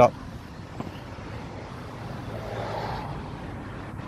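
Steady rumble of road traffic with a low hum, swelling a little about two and a half to three seconds in as a vehicle goes by.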